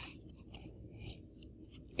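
Quiet room tone with one sharp click at the very start and a few fainter clicks near the end.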